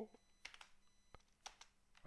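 Near silence with a few faint computer keyboard keystrokes, single clicks spread over the two seconds.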